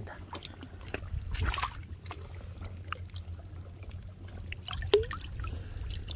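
Shallow seawater splashing and trickling as a hand reaches into a rock pool and lifts out a sea cucumber. There are small wet clicks and drips throughout, with a fuller splash about a second and a half in, over a steady low rumble.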